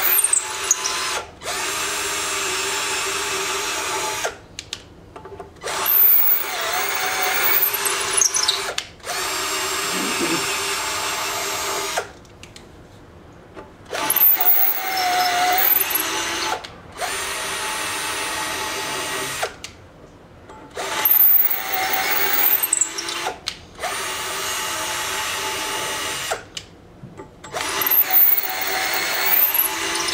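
Hand-held power drill boring holes in a thick steel plate. It runs in bursts of a few seconds with short pauses between, and the pitch sweeps high as several of the runs start.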